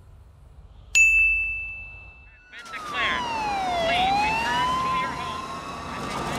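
A bright bell-like ding struck about a second in and ringing on a steady high note for about a second and a half: the compilation's death-counter sound effect marking a new death. From about halfway through, a loud swell of noise carries a wailing tone that slides down for about a second and a half, then slowly climbs again.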